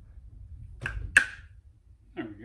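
Cap of a small plastic bottle being twisted and pulled open by hand: two sharp snaps about a third of a second apart near the middle, the second louder, over low handling rumble.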